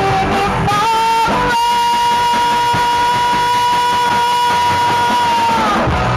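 A live rock band playing with electric guitars, bass and drums. A single long note is held for about four seconds and slides down at the end.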